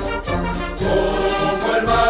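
A choir singing a Spanish-language Chilean army marching song, with a musical accompaniment, the notes held and moving in steps.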